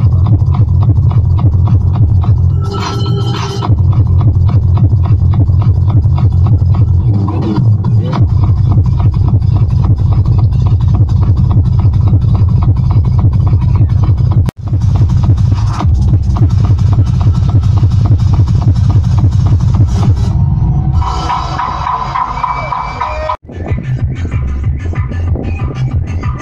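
Loud tekno dance music over a sound system, with deep bass and a steady heavy kick drum. The sound drops out for an instant twice, about 14 and 23 seconds in.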